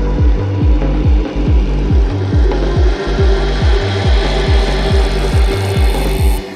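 Psytrance dance music: a steady kick drum at about 140 beats a minute with a rolling bassline between the kicks. A noise sweep rises and brightens toward the end.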